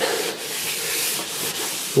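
Cloth rag wiping back and forth over a painted steel vehicle floor pan, a steady rubbing hiss that swells slightly midway.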